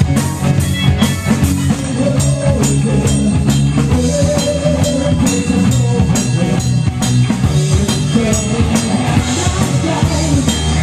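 Live rock band playing, with electric guitar, bass and drum kit keeping a steady beat and a lead melody line that wavers in pitch over the top.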